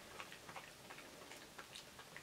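Near silence: room tone with faint, irregular small clicks scattered through it.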